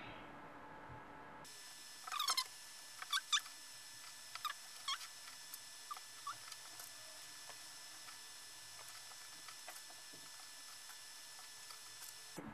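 A faint series of short, high squeaks, about a dozen, coming at irregular intervals over a steady hiss and thinning out after the first half.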